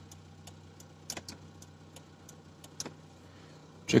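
Zastava Yugo's four-cylinder engine idling steadily, heard from inside the cabin as a low hum, with scattered faint light clicks over it.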